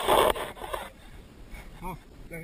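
Fishing line paying out from a baitcasting reel during a cast: a brief rasping whir, loudest at the start and fading out within a second. A short vocal sound follows near the end.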